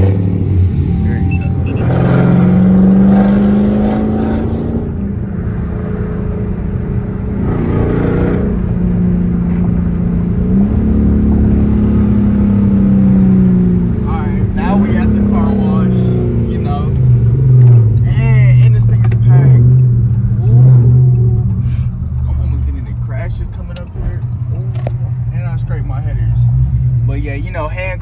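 Dodge Charger's Hemi V8 starting up, then running and revving as the car pulls away and drives, heard from inside the cabin. The engine note rises and falls several times with the throttle, then settles into a lower steady drone about two-thirds of the way through.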